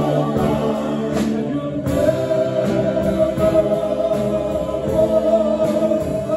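Live band music: several men singing a held note in harmony into microphones over electric guitars, bass and saxophone, moving to a new long-held chord about two seconds in.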